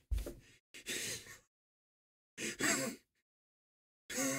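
A man laughing breathily under his breath: three short gasping bursts of laughter with silence between them.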